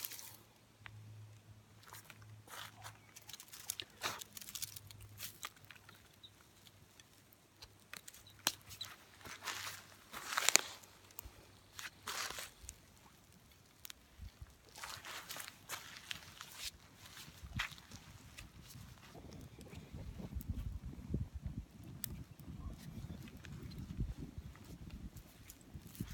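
Small twig-bundle fire crackling, with scattered sharp snaps and pops as the dry twigs catch. From about three-quarters of the way in, a low steady rumble with thicker crackling sets in as the fire takes hold and burns hot.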